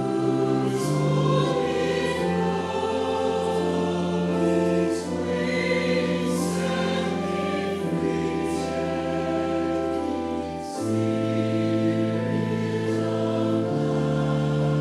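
A choir singing a slow piece in long held chords that change every second or two over a steady low bass.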